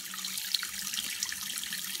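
Tap water running steadily into a bathroom sink, with small wet clicks of a wet lump of African black soap being rubbed between the hands to lather it.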